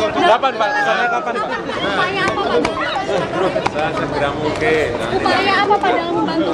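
Several people talking at once over one another in a crowded press huddle, with a few faint clicks and knocks among the voices.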